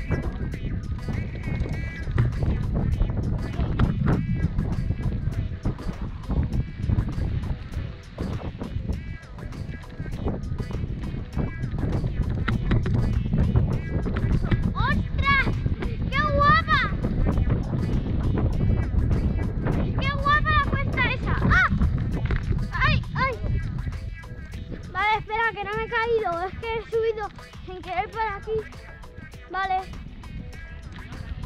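Wind rumble on a bike-mounted action camera and the rattle of a mountain bike rolling over a dirt trail, with many small clicks and knocks.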